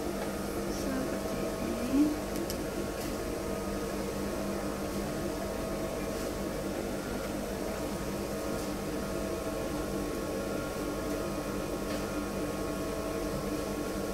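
Industrial sewing machine's motor humming steadily while switched on, with a few faint clicks of fabric and the machine being handled.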